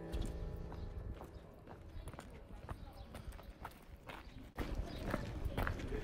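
Footsteps on a cobblestone street, a scatter of hard taps, with faint voices. The taps get louder and busier about four and a half seconds in.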